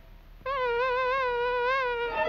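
A long cat-like yowl, held at one pitch with a steady wobble, starting about half a second in and lasting about a second and a half: a cartoon sound effect used to disturb a sleeping dog.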